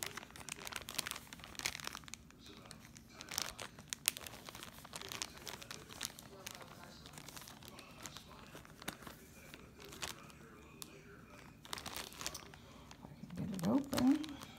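Clear zip-top plastic storage bags packed with fabric crinkling and crackling as they are handled, a dense run of short sharp crackles that comes and goes, busiest in the first few seconds.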